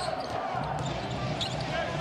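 Basketball being dribbled on a hardwood court, a few short bounces over the steady background noise of an arena broadcast.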